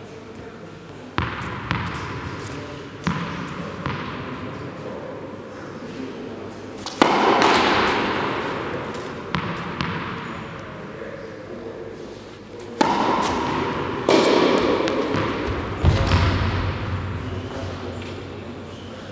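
Tennis ball knocks, from racket strikes and bounces on the sports-hall floor: about eight sharp hits spread irregularly, each ringing on in the big hall's echo. The loudest come about seven seconds in and again near the end.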